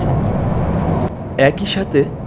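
Steady running noise of a moving passenger train heard from on board, with a short spoken word about one and a half seconds in.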